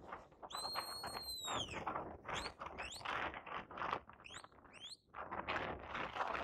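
Shepherd's whistle commands to a working sheepdog: one long held high note that falls away at its end, then two pairs of short rising notes.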